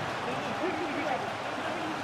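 Football match broadcast ambience: a steady background hiss with faint voices from the pitch.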